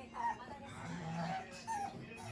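Pug whimpering: two short high whines, one just after the start and one near the end.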